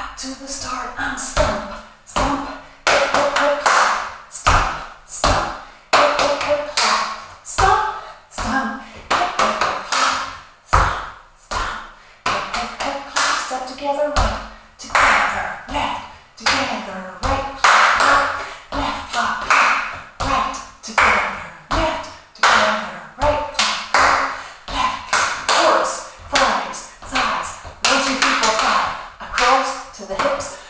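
Body percussion on a wooden floor: a steady run of foot stomps and hand claps and slaps on the body, some strikes heavy and low. A woman's voice calls along between the strikes.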